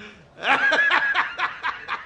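A man laughing hard in a quick, even run of 'ha-ha' pulses that starts about half a second in and tapers off toward the end.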